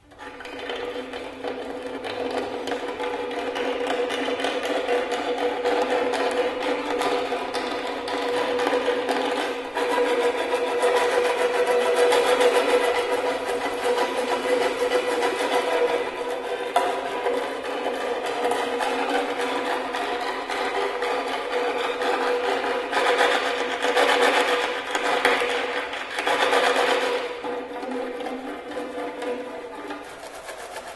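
Prepared, amplified violin played by drawing a white rod across the strings near the bridge instead of a bow. It makes a dense, continuous grating buzz over a steady held pitch, coming in suddenly and swelling louder through the middle.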